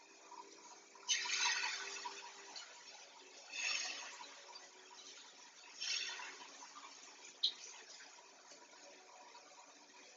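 Flatbread batter hitting a hot greased pan and sizzling, three times, each sizzle starting sharply and dying away over a second or two.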